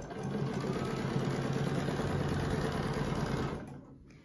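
Domestic sewing machine running at a steady speed while free-motion quilting clamshells along a quilting ruler, stopping shortly before the end.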